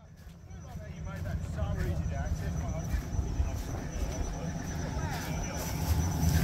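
A group of people talking at a distance over a steady low rumble, fading in from silence at the start.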